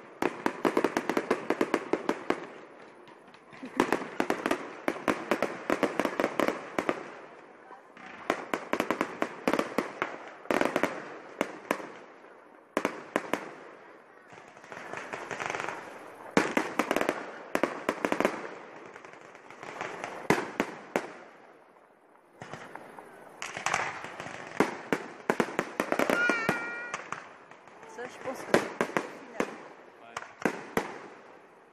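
Aerial fireworks display: rapid pops and crackles in dense clusters that swell and fade about every two seconds, with voices from the watching crowd underneath.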